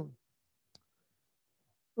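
Near silence in a pause between sentences, broken by one faint, short click about three-quarters of a second in.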